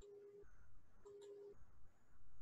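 Near silence with two faint short beeps of one steady low tone, each about half a second long and about a second apart.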